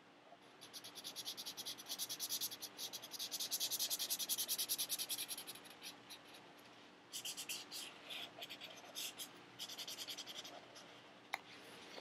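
Felt-tip marker scribbling on sketchbook paper in quick back-and-forth strokes, colouring in an area. A run of about five seconds of steady scribbling, a short pause, then a few more seconds of strokes.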